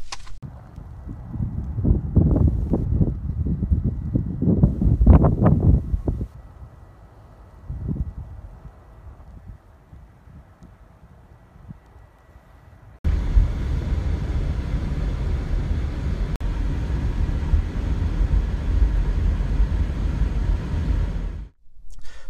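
Wind buffeting the microphone in a sleet and snow storm, coming in strong gusts at first. After a quieter lull it switches suddenly, a little past halfway, to a steady loud rush of wind.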